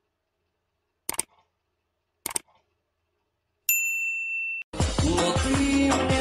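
Subscribe-button animation sound effects: two mouse clicks about a second apart, then a bright bell-like ding held for about a second. Music starts just after the ding and carries on to the end.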